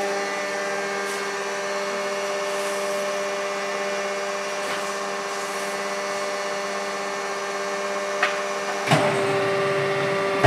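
Hydraulic pump unit of a 100-ton die-cutting press running with a steady hum made up of several fixed tones. A short click comes near the end, followed about a second before the end by a sharper knock.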